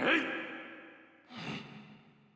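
A voice crying out with a long echoing tail, fading away, followed about a second and a half in by a second, shorter burst that also fades.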